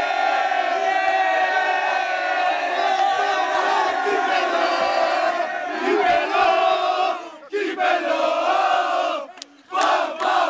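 A group of young male footballers chanting together in celebration, many voices loud and in unison. The chant breaks off briefly about seven and a half seconds in and again near the end, then starts up again.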